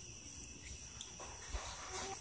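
Quiet room tone with a faint, steady high-pitched tone running throughout and a soft low thump about one and a half seconds in.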